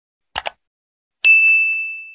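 Subscribe-button sound effect: a quick double mouse click, then about a second in a single high bell ding that rings on and fades away.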